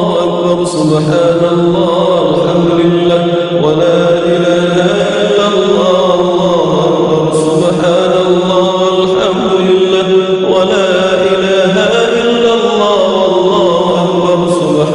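Islamic devotional chant in Arabic: a voice singing a melodic line over a steady held low drone, continuous and loud.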